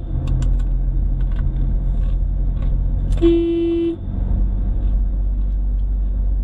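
A car driving, heard from inside the cabin as a steady low rumble of engine and road noise. A car horn gives one short, single-pitched toot just over three seconds in.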